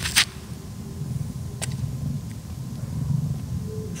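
Wind rumbling on the microphone. A short sharp scuff sounds as a disc golf drive is thrown off a concrete tee pad, followed by a smaller click about a second and a half later.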